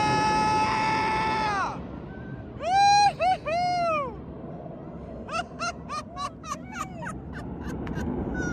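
High-pitched calls from a voice, with no words: a long held squeal that drops at the end, then three arching cries, then a quick run of about eight short calls.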